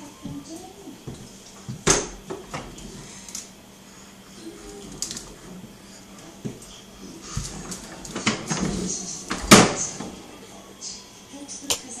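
Irregular knocks and rattles as a toddler handles a kitchen oven door and a plastic ride-on toy, with sharp knocks about two seconds in and, loudest, about nine and a half seconds in.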